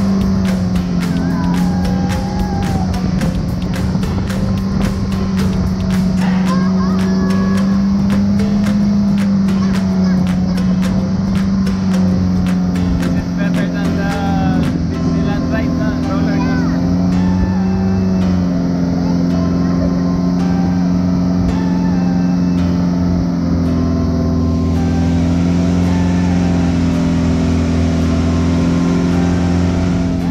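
Boat engine running with a steady, loud drone, and people's voices over it.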